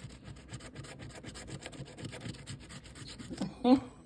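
A coin scratching the coating off a paper scratch-off lottery ticket: a quick run of short scratch strokes for about three seconds. A brief burst of voice follows near the end.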